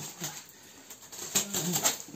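A small blade cutting and scraping along packing tape on a cardboard box, a few short scratchy clicks in the second half.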